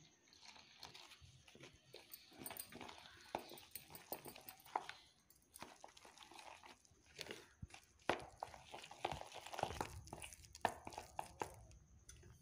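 Spoon stirring a thick flour batter in a bowl: faint, irregular wet scrapes and small clicks of the spoon against the bowl.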